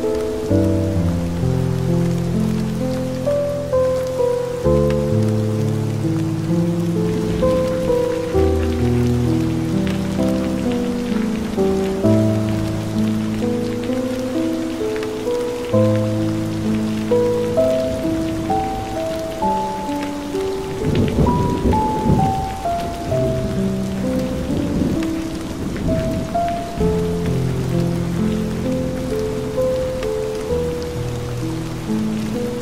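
Steady rain mixed with slow, calm music of long held notes and chords. Rolls of thunder rumble in about two-thirds of the way through, twice in close succession.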